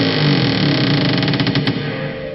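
Dark, droning horror background music with a dense, buzzing texture and a run of quick ticks in the middle.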